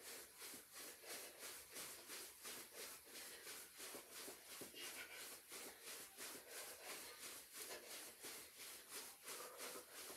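Faint, even footfalls of sneakers jogging in place on a carpeted floor, about three or four steps a second.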